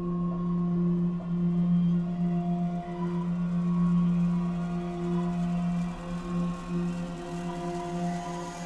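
Background film score: an ambient music bed built on a steady low drone, with softer held tones above it that swell and fade slowly.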